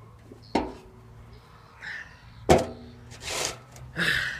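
Two sharp knocks on a metal table, about two seconds apart, each with a short metallic ring, the second the louder, as things are set down on it; rustling in between over a steady low hum.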